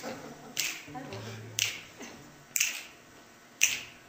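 Finger snaps keeping a steady beat, about one a second, as percussion for the song while the instruments drop out, with a brief low note a little after a second in.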